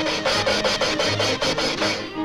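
Cartoon sound effect of rapid, rhythmic scraping, about eight rasping strokes a second, over a steady pitched tone; the strokes stop near the end.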